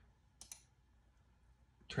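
Two quick, sharp clicks on a computer, paging through an on-screen catalogue, over faint room tone.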